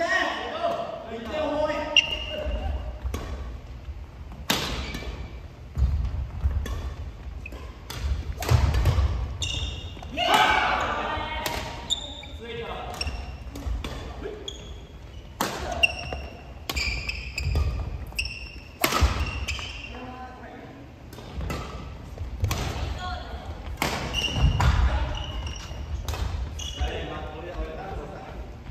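Badminton rackets striking a shuttlecock in repeated sharp cracks through a doubles rally, echoing in a large gym. Court shoes squeak briefly on the wooden floor and footfalls thud between the shots.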